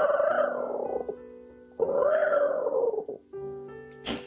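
Two playful pretend dinosaur roars by a puppeteer voicing a teddy bear puppet, each about a second long, over soft background music.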